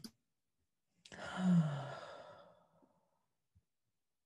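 A person's sigh: a breathy out-breath about a second in, with a short falling hum in the voice, fading out over nearly two seconds.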